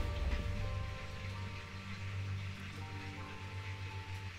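Film trailer music dying away after its final hit: quiet sustained tones that slowly fade.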